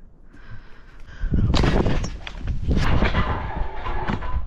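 Bouncing on a trampoline with a trick scooter: starting about a second in, a run of heavy thuds and knocks with a rushing noise as the rider jumps and whips the scooter around.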